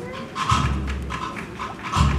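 Military cornet-and-drum band playing a procession march, with drums beating and a deep drum rumble from about half a second in.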